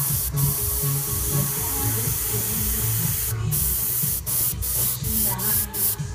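Airbrush spraying paint, a steady hiss of air that cuts out briefly several times, mostly in the second half. Background music with low sustained notes plays under it.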